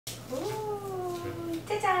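A person's voice drawing out one long sing-song vowel that rises, then slowly falls over about a second, followed near the end by an exclaimed '짠' ('ta-da!').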